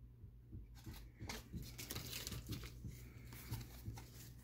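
Faint rustling and crinkling as Pokémon trading cards and their foil booster-pack wrapper are handled, with irregular small clicks starting about a second in.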